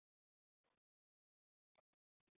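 Near silence, with a few very faint, brief blips.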